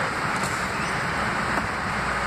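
Steady low rumble of an idling vehicle engine, with a few faint knocks.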